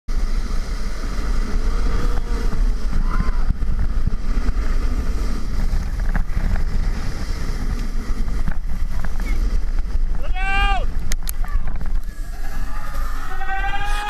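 Rumbling wind and scraping noise from a snow tube sliding fast downhill, heard through a GoPro microphone buffeted by the wind, with a brief voice whoop about ten seconds in. A song starts near the end.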